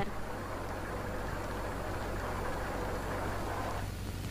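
A bus engine running steadily, a low, even rumble that stops near the end.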